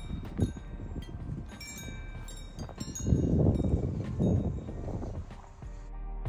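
Metal tube wind chimes ringing in the breeze, with a low rumble of wind on the microphone that swells midway. Background music comes in near the end.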